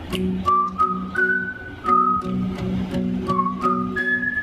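Strummed acoustic guitar with a whistled melody over it. The whistle holds a few long notes, stepping up, dropping lower in the second half, then rising again, while the guitar keeps a steady strum of about three strokes a second.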